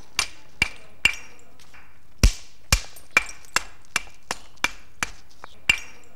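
Antler billet striking the edge of a stone cleaver, knocking off a series of flakes: about a dozen sharp knocks, each with a brief ring, coming roughly two a second, with a short pause after the first second. The loudest blow falls a little after two seconds in.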